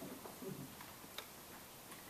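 Quiet room tone in a hall, with a few faint small clicks, the sharpest about a second in.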